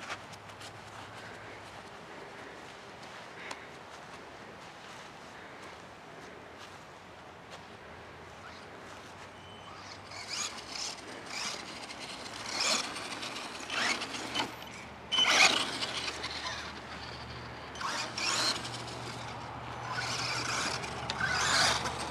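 Traxxas 1/16 Summit VXL electric RC monster truck driving over grass: faint for the first ten seconds, then repeated short bursts of high-pitched motor and gear whine with tyre noise as the throttle is punched, the loudest about halfway through.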